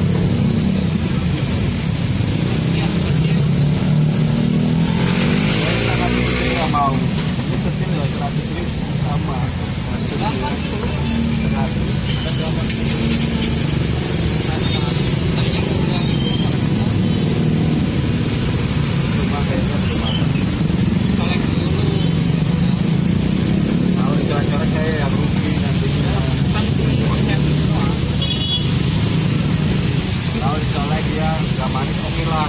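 Steady road-traffic rumble, motorcycles among it, with people talking over it at intervals.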